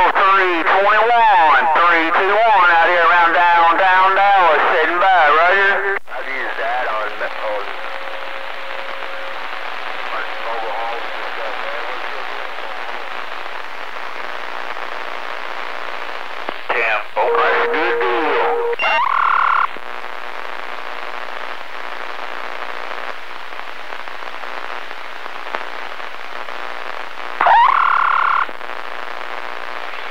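CB radio receiver audio on a skip band: a distorted, warbling sideband voice for about six seconds, then steady band static with faint carrier tones. Short bursts with steady tones come in around two-thirds of the way through and again near the end.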